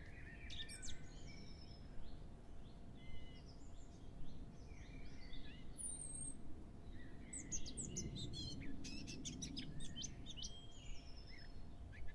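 Birds chirping and singing quietly: short scattered calls with quick pitch slides, a busier flurry about eight seconds in, over a faint steady hum.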